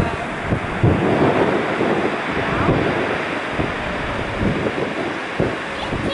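Boeing 787-8 Dreamliner's jet engines rumbling steadily as the airliner rolls out along the runway after touchdown, with wind buffeting the microphone.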